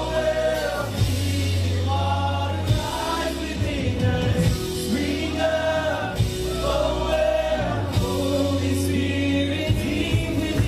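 A live Christian worship band playing a song: sung vocals with several voices over acoustic guitar, drums and long, deep held bass notes.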